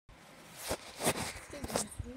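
Three short bursts of rustling and rubbing from a phone being handled close to its microphone, with a brief soft voice sound near the end.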